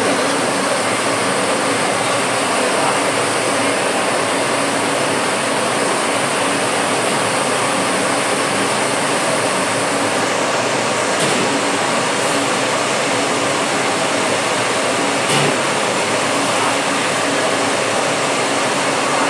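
Commercial gas range burner running at high flame, a loud steady rushing roar, with a couple of faint clicks partway through.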